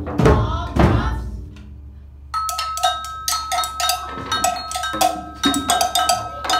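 Children playing djembes and hand drums. A few heavy, slow beats come about half a second apart, then a short lull. From a little over two seconds in, fast light tapping runs on with a steady ringing tone under it.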